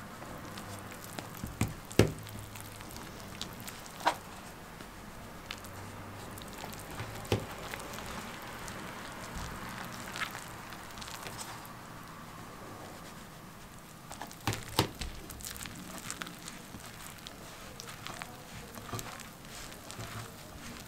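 Hands mixing and kneading flour into a soft, wet bread dough in a glass bowl: faint, steady rustling and crackling, with a few short sharp knocks now and then.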